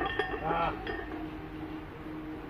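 Iron weight plates clinking against each other and the bar of a loaded barbell, a few sharp clinks in the first second as the lifter stands up out of a squat.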